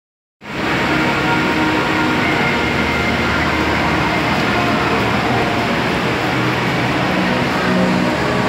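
Steady, loud background din of a busy indoor aquarium hall: a reverberant wash of crowd noise and machinery hum with faint steady tones through it, starting abruptly just after the start.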